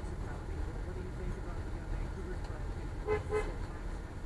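Two short car-horn toots in quick succession about three seconds in, over the steady low rumble of a vehicle driving.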